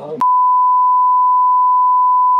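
Steady 1 kHz test tone, the kind laid over TV colour bars, cutting in abruptly over a laugh and an 'um' just after the start and holding loud and unchanging.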